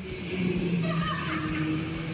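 Electric go-kart driving on an indoor concrete track, its motor whining steadily, with tyres squealing as it corners. The sound starts about a third of a second in.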